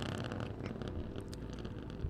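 SpaceX Starship SN15's three Raptor engines burning during ascent, a low steady rumble with light crackle, played back from the launch webcast's onboard footage.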